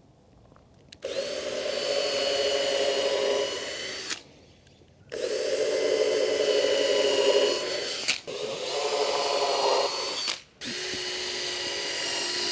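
Cordless drill running into stained wooden boards in four runs of two to three seconds each, a steady motor whine with short pauses between.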